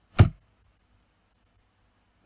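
A single sharp knock of a computer keyboard key being struck, about a quarter second in.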